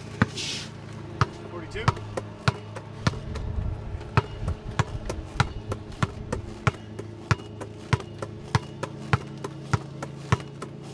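A basketball dribbled hard on asphalt in a steady rhythm of about one and a half bounces a second, as power dribbles crossing from one side of a wheelchair to the other.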